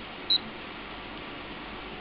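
A handheld digital multifunction anemometer gives a single short, high key beep about a third of a second in, over a steady faint hiss.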